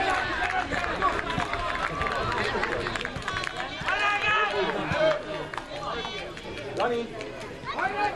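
Spectators and players shouting and calling out during youth football play, with several high-pitched calls about halfway through and near the end.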